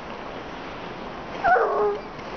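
A bloodhound gives one short, whining yelp about a second and a half in, its pitch stepping down as it goes.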